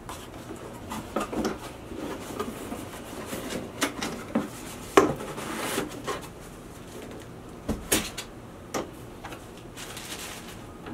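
Cardboard packing box being handled and lifted: scraping and rustling of the cardboard, with a few sharp knocks scattered through, the loudest about five and eight seconds in.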